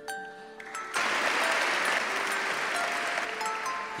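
Audience applauding, starting about a second in, over background music of soft held notes.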